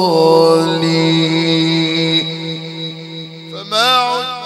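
A man's voice singing an Arabic funeral elegy (inshad) through a microphone, holding one long note for about three and a half seconds over a steady drone, then breaking into a new phrase with a wavering, ornamented melody near the end.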